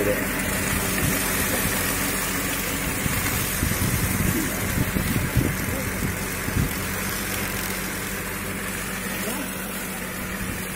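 Tractor engine running steadily as it pulls a sugarcane trash-stripping machine through the cane rows, gradually growing fainter.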